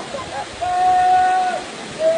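Steady rush of a waterfall pouring into a rock pool, with one long held call from a person's voice about a second long in the middle.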